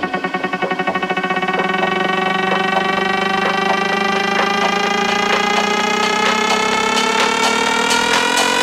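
Electronic dance music build-up: a pitched synth riser gliding slowly upward in pitch. Its fast pulsing quickens and smooths into a steady tone about a second and a half in.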